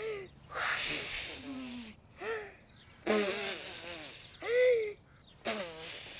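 A cartoon character's voice blowing hard three times, each a long breathy puff of about a second and a half, with short voiced sounds between the puffs: trying to blow a cloud away.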